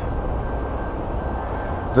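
Steady low rumble and even hiss of background noise, with a faint steady high tone and no distinct events.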